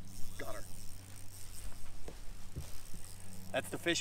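Bass boat's electric trolling motor humming steadily and low. A short voice sound comes about half a second in, and speech starts near the end.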